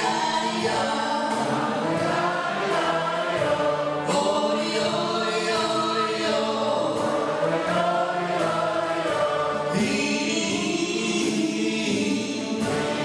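A man and a woman singing together into microphones, backed by a wind band with saxophones, brass and a steady drum beat.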